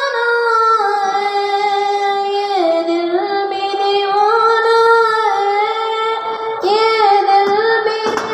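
A single high voice singing unaccompanied, holding long drawn-out notes that slide slowly from one pitch to the next, with a short break for a new phrase near the end.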